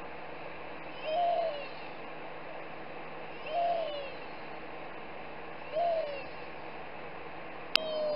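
Steady airliner cabin noise in cruise. Over it, a short call that falls in pitch repeats four times, about two seconds apart, with a sharp click just before the last one.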